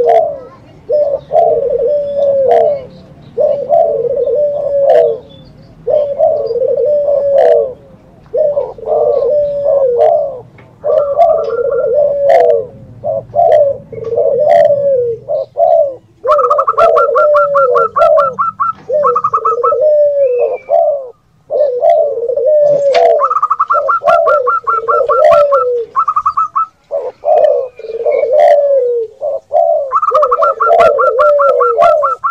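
A layered recording of dove calls: spotted dove, ringneck dove and zebra dove. Low cooing phrases repeat about once a second throughout. From about halfway, rapid runs of higher staccato notes come in over the coos.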